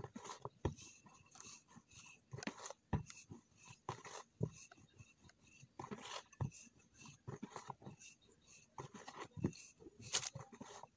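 Hands working a ball of dough inside a plastic tub: irregular soft knocks and rustling handling noises, close to the microphone.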